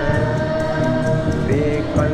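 Malay ghazal ensemble performing: singing holds a long note over hand drums and string instruments, and a new sung phrase begins about one and a half seconds in.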